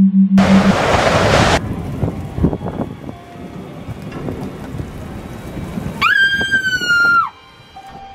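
A sudden loud rush of noise about half a second in, lasting about a second, followed by handheld rustling and knocking of movement, then a long high-pitched scream about six seconds in that drops and cuts off after just over a second.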